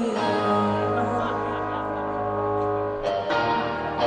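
Live band music heard from an audience recording: sustained, bell-like ringing electric guitar chords with no singing over them, and a new chord struck about three seconds in.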